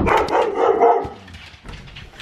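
Siberian huskies barking excitedly, starting sharply and loudest in the first second, then dying down.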